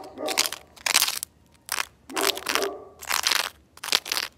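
Plastic spoon digging and scraping into hard, gritty soil: about six crunching scrapes in quick succession.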